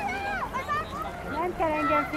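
People's voices calling out in several drawn-out shouts that rise and fall in pitch.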